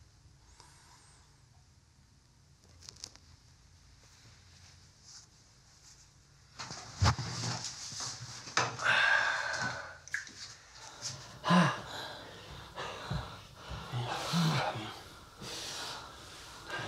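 Quiet room tone, then from about six and a half seconds in a person's heavy, irregular breathing with snorts and gasps.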